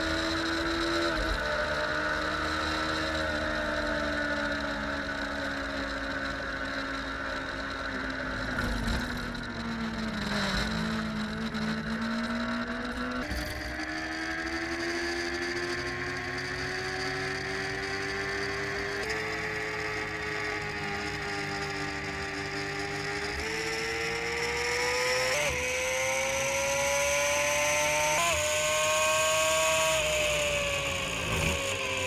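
Racing sidecar's engine at full race pace, heard onboard with wind rush: the revs sink to a low point around ten seconds in, then climb again with several short dips in pitch, getting louder near the end.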